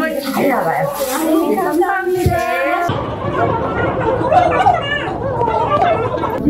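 Women talking; about three seconds in, the background turns abruptly to a denser hubbub under the voices.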